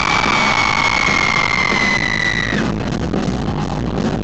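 Live rock band playing loudly with drums and electric guitars. A single long, high-pitched held tone sounds over it, sinking slowly and cutting off about two and a half seconds in.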